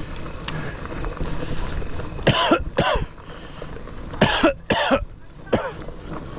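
A person coughing hard in two fits: two coughs about two seconds in, then three more a second or two later.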